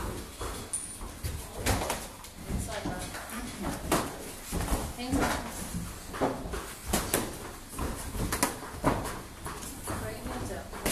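Irregular sharp thuds of gloved punches and kicks landing during Muay Thai sparring, spaced unevenly about once or twice a second.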